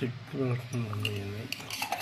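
Stainless-steel plate and spoon clinking a few times, the clinks mostly near the end, with a person's voice over the first part.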